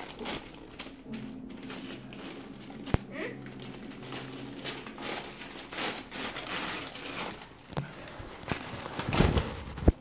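Gift wrapping paper crinkling and tearing in short bursts as a large wrapped present is handled and ripped open by a small child, with a sharp click about three seconds in.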